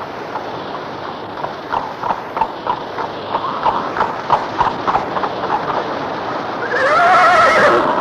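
Radio-drama sound effect of a horse's hooves clip-clopping in a steady rhythm, then the horse whinnying near the end, the loudest sound here, its pitch wavering up and down for about a second as it is reined in.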